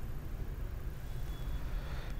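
Steady low background rumble with a faint hiss: room tone, with no speech or music.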